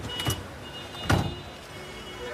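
A car door being shut: a short click, then a heavier thump about a second in.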